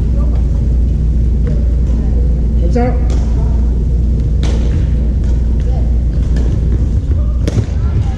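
Sports hall ambience: a steady low rumble with distant voices of players and a few sharp smacks of badminton rackets hitting shuttlecocks on the courts.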